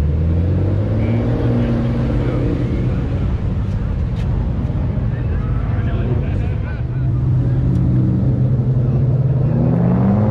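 Sports car engines running as cars drive slowly past one after another. Near the end an engine note rises as the next car pulls through.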